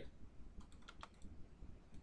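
A few faint computer keyboard clicks, several close together between about half a second and a second in.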